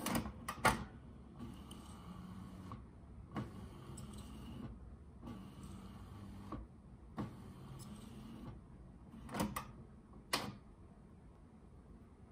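Epson EcoTank ET-3850 printer's internal mechanism working through its initial ink charge: four evenly spaced motor runs of about a second and a half each, with sharp clicks and clunks at the start and near the end.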